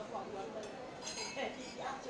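Metal cutlery clinking against ceramic plates: several sharp clinks with a short ring, mostly around the middle, over a low murmur of voices.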